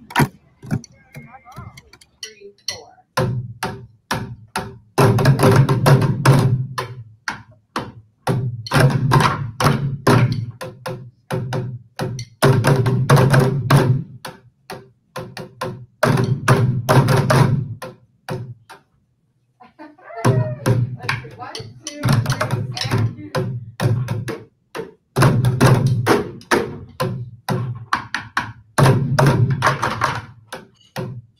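Bucket drumming by a group of players: many drumsticks striking upturned plastic buckets in fast rhythmic patterns. It is played in phrases of two to four seconds with short gaps between them, and there is a brief full stop about two-thirds of the way through.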